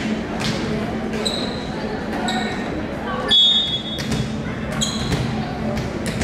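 Indoor volleyball game sounds in a large gym: a volleyball bounced on the hardwood floor several times, short shoe squeaks, and voices. About halfway through comes the loudest sound, a short shrill referee's whistle blast, the signal to serve.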